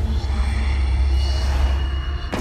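Horror trailer sound design: a loud, deep rumbling drone, with a thin high whine coming in about halfway through.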